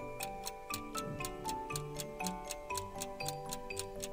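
Steady clock-like ticking, about four ticks a second, over light, cheerful background music.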